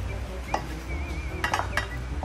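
Wooden spatula scraping and knocking against a frying pan as sautéed tuna is scraped out into a bowl, with a few sharp knocks and clinks.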